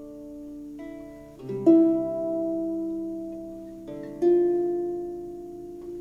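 Small wooden harp playing slow plucked chords alone, without melody, each chord left to ring and fade before the next; the strongest chords come about one and a half seconds in and again just after four seconds.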